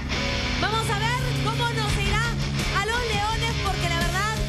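A woman singing into a microphone, her voice wavering with vibrato, over loud band backing music with guitar.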